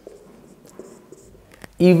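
Marker pen writing on a whiteboard: faint scratching and light squeaks as the words are written and underlined, with a sharp click shortly before the end.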